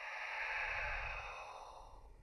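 A breathy, airy whoosh that swells and then fades away, like a sigh.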